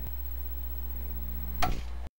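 Intro sound effect: a steady low hum, with a faint click at the start and a short, sharp hit about one and a half seconds in that is the loudest sound.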